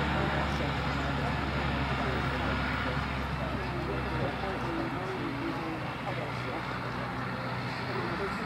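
A steady low motor hum, like an engine idling, fades out about halfway through, under indistinct background voices.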